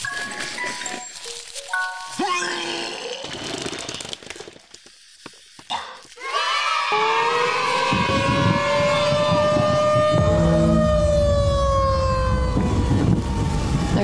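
A short musical sting of stepped notes. After a brief lull, a tornado warning siren winds up and then slowly falls in pitch over a low storm rumble.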